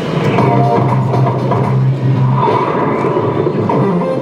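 Music, with a long held low note for about two seconds in the first half.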